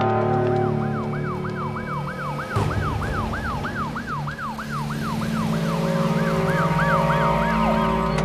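Police siren yelping in quick up-and-down sweeps, about three a second, sliding down and winding off near the end, over steady background music.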